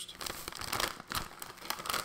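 Foil chip bag (Lay's Sweet Southern Heat Barbecue) crinkling in the hand as it is picked up and handled, an irregular run of crackles.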